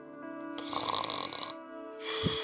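A single loud, rasping snore lasting about a second, which cuts off abruptly, over soft ambient music.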